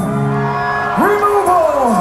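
A man's voice through a live concert PA, drawn out into long held shouted notes that sag in pitch at their ends. A low steady held tone comes before it in the first second.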